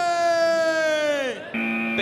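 A long held call or tone that sags slightly in pitch and falls away, then about one and a half seconds in a steady electronic buzzer tone: the start signal for the chase.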